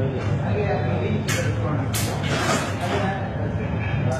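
Indistinct talking over a steady low rumble, with a few short hissy bursts in the middle.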